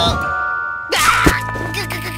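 Cartoon sound effects over background music: a sudden chime-like ringing tone at the start, then a short startled vocal cry about a second in.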